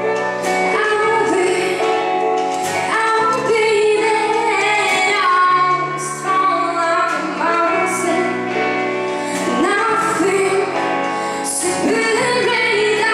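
Live pop band with a woman singing the lead vocal in English, her voice bending through held notes over sustained bass notes and chords.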